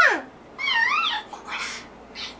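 Battery-powered plush toy puppy giving short electronic yips with a wavering pitch: one trailing off with a falling glide at the start and another about half a second in. The toy barks in response to the child's voice.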